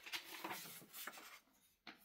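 Faint rustling and handling of a sheet of paper, a few soft scattered rustles and ticks that stop abruptly about a second and a half in.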